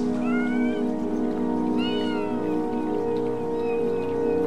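A cat meows twice, the calls about a second and a half apart, over a steady, sustained ambient music drone.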